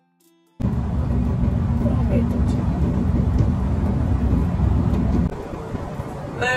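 Low rumbling road and engine noise of a moving car, heard from inside the cabin. It starts abruptly about half a second in and drops to a quieter level near the end.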